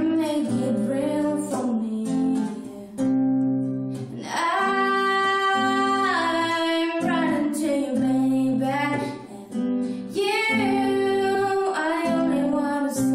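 A woman singing a ballad, accompanied by her own acoustic guitar playing chords; the sung lines are held and bend in pitch, with brief breaths between phrases.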